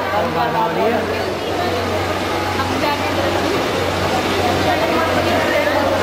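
Several people talking over one another, with a steady low hum underneath.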